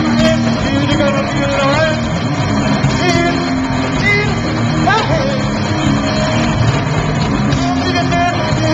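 Live band playing loud, distorted heavy music, with shouted vocals over it and a few sliding pitches.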